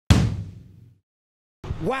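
A single cinematic impact sound effect: a sudden deep boom that dies away over about a second, then silence.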